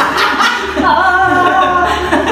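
Several young men laughing loudly together, over background music with a steady bass line.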